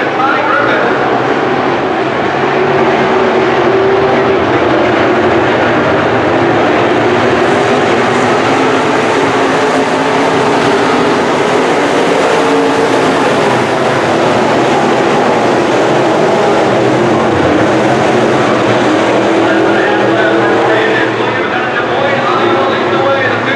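IMCA Sport Modified dirt-track race cars' V8 engines running hard at racing speed, several cars together making a loud, continuous drone whose pitch wavers as they lap. It is loudest and brightest in the middle stretch as the cars pass closest.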